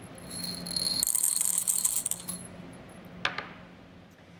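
Glassware jingling and rattling lightly for about two seconds, then a single clink a little over three seconds in.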